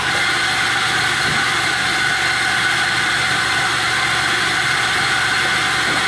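Loud, steady machine noise from coffee-shop equipment, starting abruptly and running on without a break.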